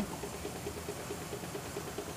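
Low, steady running noise of an idling car engine mixed with the air-operated vacuum extractor drawing old coolant and air through the service hose during a coolant flush.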